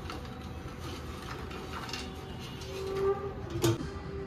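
Steady whirring hum of an air fryer's fan, with light rattles from the basket as it is handled and one sharp click a little after three and a half seconds in.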